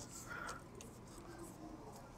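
Faint handling sounds from hands turning a paracord globe knot on a keychain: a few light ticks and soft rustles.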